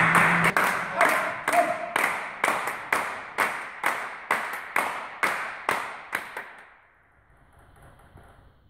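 Spectators clapping in unison, about two claps a second, growing fainter and dying out about seven seconds in.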